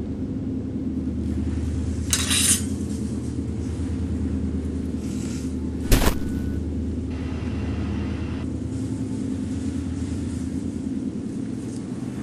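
A steady low rumbling drone, with a short rustling hiss about two seconds in and one sharp click, the loudest sound, near the middle.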